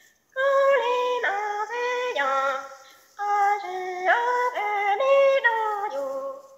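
Hmong kwv txhiaj sung poetry: a high female voice holding long notes that step and glide between pitches, in two phrases with a short break about three seconds in.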